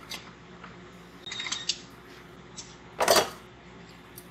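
Hand-handled metal hardware: a few light clicks about a second and a half in, then a sharper, louder clatter about three seconds in, over a steady low hum.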